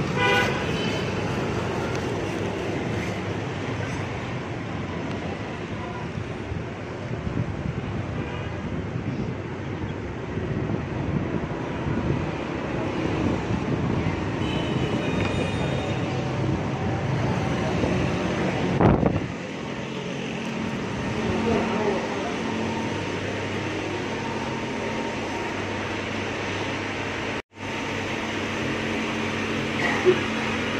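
Street traffic noise with a short vehicle horn toot at the start. A loud swish comes a little before two-thirds of the way through, after which a steady low hum takes over.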